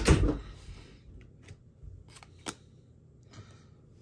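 Chrome-finish trading cards being handled and shuffled through by hand, giving a few faint, scattered clicks and ticks as the stiff cards slide and tap against each other.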